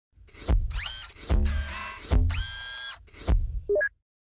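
Intro sound-effect sting: four sharp hits, each followed by a whirring tone that rises in pitch and holds, then two short rising blips near the end before it cuts off.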